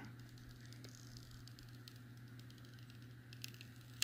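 Very faint handling sound of a thin plastic protective film being peeled off a metal detector's display screen, with a few small ticks near the end, over a steady low hum.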